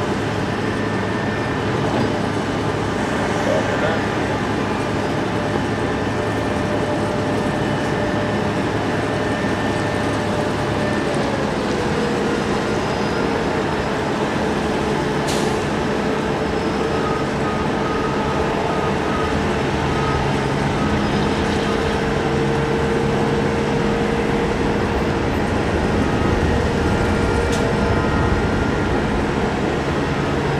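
Steady jet-engine noise from an airliner at taxi idle, with a whining tone that drops slightly in pitch about eleven seconds in.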